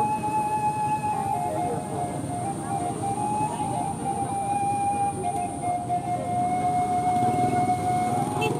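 A siren holding one long, steady note that steps down slightly in pitch about five seconds in, over a continuous rumble of background noise.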